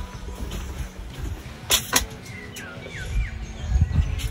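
A few short falling chirps from a bird in the middle, over a steady low rumble. Two sharp clicks just before the chirps.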